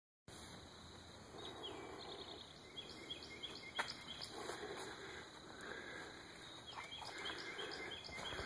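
Faint outdoor ambience with runs of short, high chirping calls repeated a few times a second, and a couple of brief clicks.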